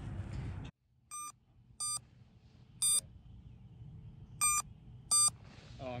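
Crashed FPV racing drone's locator beeper sounding short, shrill electronic beeps, five of them at uneven intervals, heard close up from where the drone lies in the wheat. The beeping signals the downed drone's position to the people searching for it. Less than a second in, a rush of noise cuts off abruptly before the beeps begin.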